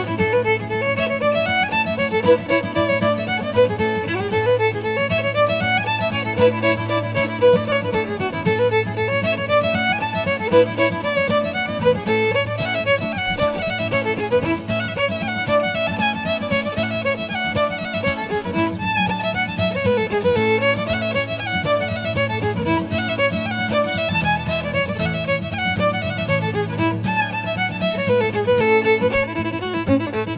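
Fiddle playing a fast traditional Irish dance tune in quick running notes over acoustic guitar accompaniment.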